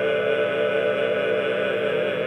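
Small ensemble of classically trained voices holding a sustained chord, each voice with a steady vibrato.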